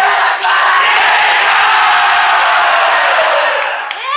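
A crowd of fans shouting and cheering together in a loud, steady roar that fades near the end.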